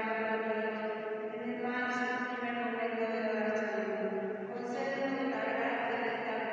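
A slow devotional chant sung in long held notes, the pitch shifting about every two seconds.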